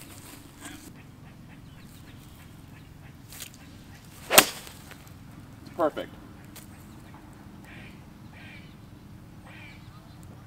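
A single sharp crack about four and a half seconds in, far louder than anything else, over a faint steady outdoor background.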